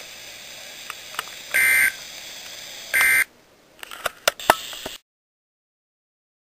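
Two short data-burst beeps, about a second and a half apart, from a NOAA weather radio over a low hiss: the Emergency Alert System end-of-message code sent after the flash flood warning. A few sharp clicks follow, then the sound cuts off.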